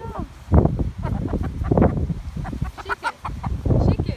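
A hen clucking: one short pitched call at the start, then a run of short separate clucks.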